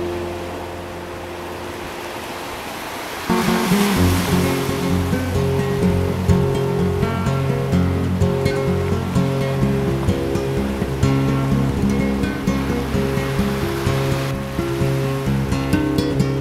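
Background music laid over the footage: held notes for the first three seconds, then the music comes back in louder with moving notes about three seconds in. A rush of noise comes up with it, and a shorter one comes near the end.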